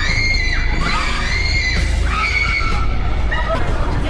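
People screaming in fright: several high-pitched screams, each held for under a second, over background music.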